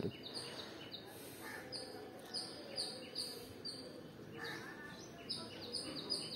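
Small birds chirping in quick runs of short, high calls over faint background noise.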